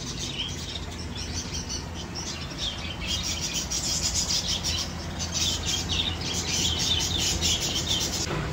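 Many small birds chirping and chattering rapidly and continuously, growing louder from about three seconds in, over a low steady hum.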